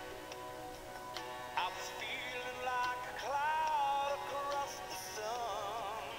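A recorded song with a lead vocal playing back from an iPod. The voice holds a note with a wide vibrato about five seconds in.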